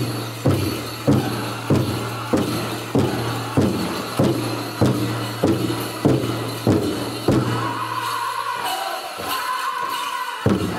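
Powwow drum group singing a chicken dance song, the big drum struck in a steady beat a little under twice a second. About three-quarters of the way through the drumbeat stops while a high held sung note carries on.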